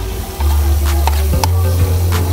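Background music with a deep steady bass line, over food sizzling as it fries, with a few sharp knocks of a utensil in the pan.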